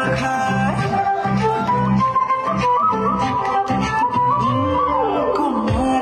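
Music playing for a dance: a melodic line over a steady rhythmic beat, continuous and loud.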